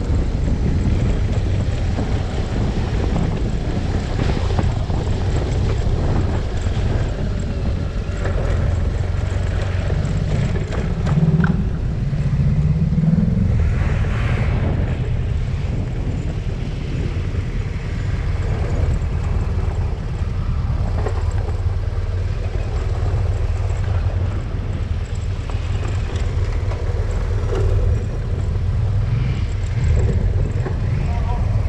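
BMW R1200GS boxer-twin motorcycle engine running steadily under way on a gravel track. Its note rises briefly about eleven to thirteen seconds in.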